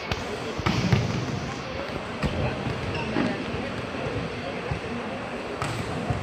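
Volleyballs being hit and bouncing on a hard indoor court floor: several separate sharp slaps over a steady murmur of voices in the hall.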